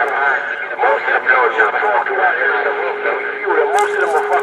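Speech only: voices talking, thin and narrow-sounding, with a steady hum under it in the second half.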